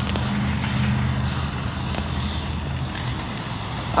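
A motor vehicle's engine running with a steady low hum that fades out about three seconds in, over a haze of outdoor noise.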